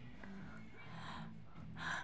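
A woman breathing close to a phone microphone, with a quick intake of breath near the end as she gets ready to speak. A faint low murmur lies underneath.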